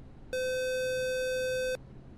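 Space Shuttle cockpit alert tone: a single steady electronic beep about a second and a half long that starts and stops abruptly. It announces a backup flight software fault message, here a loss of pressure in the left main landing gear tyre.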